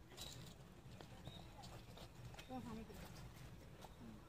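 Faint outdoor background: distant voices with scattered light clicks.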